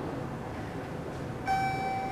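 A bell-like chime note rings out suddenly about one and a half seconds in and holds, over the steady hum of a station concourse.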